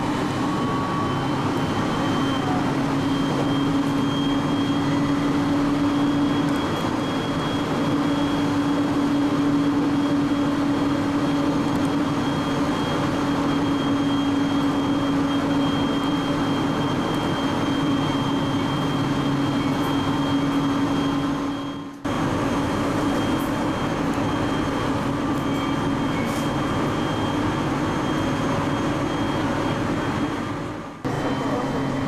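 A local train running at speed, heard from inside the passenger carriage: a steady running noise with a constant hum and a faint high whine. The sound dips and cuts out briefly about 22 seconds in.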